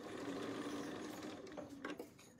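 Bernina B 570 sewing machine stitching a seam through several layers of fabric and zipper tape with a steady hum, stopping just before the end.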